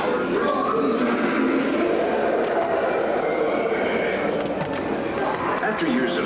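Indistinct voices with no clear words, continuing steadily over a constant background.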